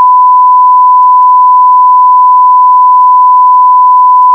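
Steady 1 kHz sine test tone, the continuous reference beep that goes with a TV test card, held at a single unchanging pitch and very loud.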